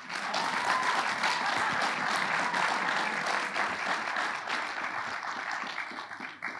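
Audience applauding, starting suddenly and thinning out near the end.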